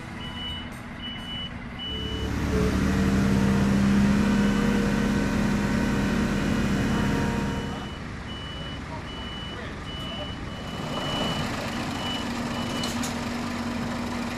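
Heavy lorry hauling a low-loader trailer: its diesel engine rises and works hard for several seconds early on, then settles, while its reversing alarm beeps in an even on-off pattern as the rig is backed into position.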